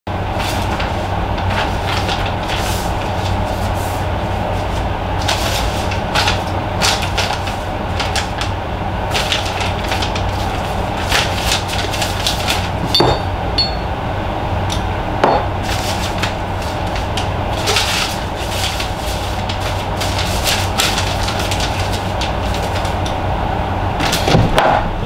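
Steady low hum and rumble, with scattered knocks and clicks throughout and a couple of short squeaks a little past the middle.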